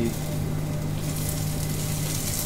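Sliced onions sizzling in a little oil on hot cast iron sizzler plates over gas burners, over a steady low hum.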